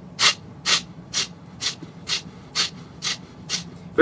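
Eight sharp, rapid exhales forced out through the nose, evenly spaced at about two a second: the rhythmic pranayama breathing of the 'chair breath' exercise.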